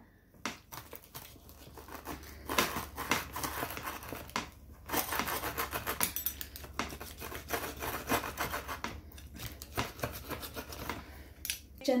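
Wheel pizza cutter rolling through a crisp baked pizza crust, slightly burnt underneath, onto a wooden board: a dense run of crackling crunches that begins about two seconds in and stops just before the end.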